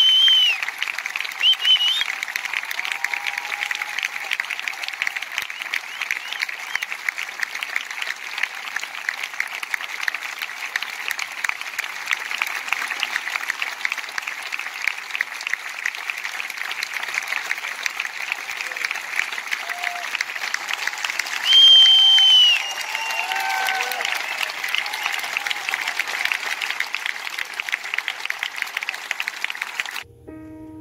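Concert audience applauding steadily, with scattered voices calling out and a few high whistles. The loudest whistle comes about two-thirds of the way through.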